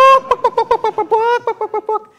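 A man's loud, high-pitched wordless yell, held on one pitch for almost two seconds and broken into rapid pulses about six a second, imitating a boy's call as he runs around the yard.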